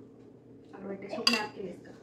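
A single sharp clink of a utensil against a dish, about a second in, under a brief spoken word.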